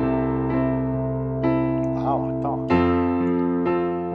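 Digital keyboard with a piano sound playing sustained chords: a C chord over a low C in the bass, with upper notes struck on top. About two and a half seconds in it changes to an F chord over a low F.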